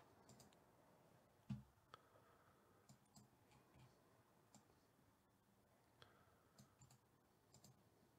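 Near silence with faint, scattered clicks of a computer mouse, single clicks every second or so, and one soft low thump about a second and a half in.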